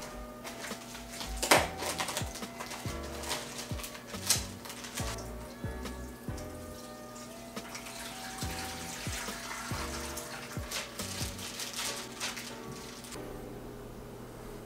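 Aquarium water poured out of a plastic fish bag through a hand net into a plastic bucket, trickling and splashing, with a few sharp rustles. Quiet background music plays underneath.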